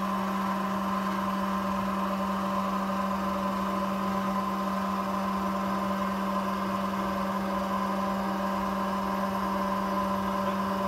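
Scissor lift's motor running steadily as the loaded platform rises, a constant hum with a low steady tone.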